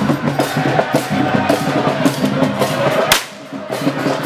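Drumming in a fast, dense rhythm of sharp strikes. A single loud crack sounds a little after three seconds, then the sound dips briefly before the drumming returns.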